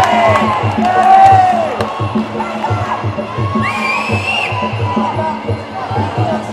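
Spectators shouting and cheering over loud background music with a steady beat; the loudest shouts come at the start and about a second in, and one long high-pitched call is held for under a second about four seconds in.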